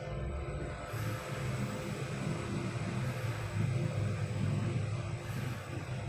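Schindler passenger lift descending, a steady low rumble of the car travelling down the shaft heard from inside the cabin, swelling slightly midway.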